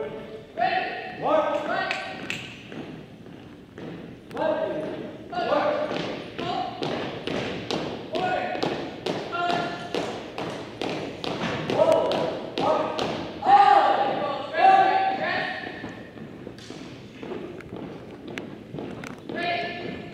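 Drill commands called out in a drawn-out, held voice in a gym, with the thumps of a color guard's boots and steps striking the wooden floor in unison as they turn and march.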